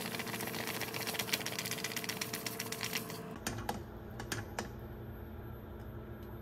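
A metal spoon stirring milk in a saucepan, clicking and scraping rapidly against the pot, stopping suddenly a little past halfway. After that come only a few scattered light clicks.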